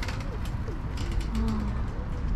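Handheld selfie-camera microphone noise outdoors: a steady low rumble with irregular clicks and rustling, and a brief low hum about one and a half seconds in.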